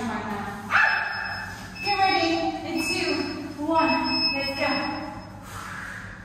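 A baby babbling: about three drawn-out calls with wavering pitch, one after another.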